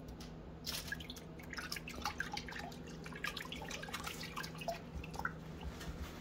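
A cat pawing at water in a plastic bowl: small, irregular splashes and drips, faint and scattered over several seconds.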